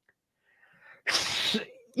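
A person's short, sharp hiss of breath, about a second in and lasting under a second, loud and without a clear pitch.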